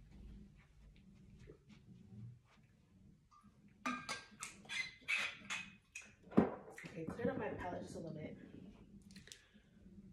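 Handling noise: a dense run of clicks and knocks, the loudest a single sharp knock a little past the middle.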